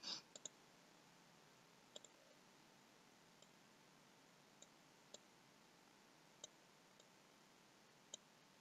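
Faint computer mouse clicks, about ten scattered over several seconds, the loudest a quick cluster at the start, against near-silent room tone.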